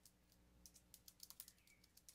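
Computer keyboard being typed on: a faint, irregular run of quick keystrokes.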